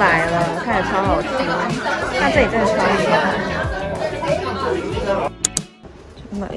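Noisy restaurant chatter: many voices talking over one another from the surrounding tables. It cuts off suddenly about five seconds in, followed by two sharp clicks.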